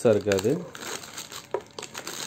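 Clear plastic bag crinkling as hands work a CCTV bullet camera around inside it, a few light crackles after a voice stops about half a second in.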